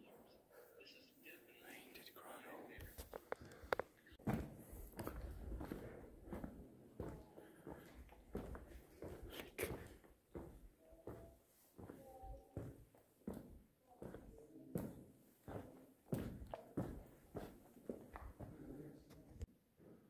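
Footsteps walking at an even pace on a cave trail, a soft knock every half second to second, with faint hushed voices of people nearby.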